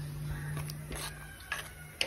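A low steady hum under a few faint clicks; near the end a steel ladle knocks against the steel pot as stirring begins.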